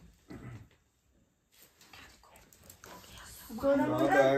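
A pet dog making a short low sound, followed by faint small noises. Speech begins near the end.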